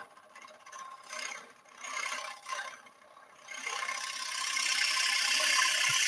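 Box scraper cutting the spinning wood blank on a lathe, taking down a high spot in the middle of the recess: a few light touches, then from about halfway a steady cutting hiss that grows louder toward the end.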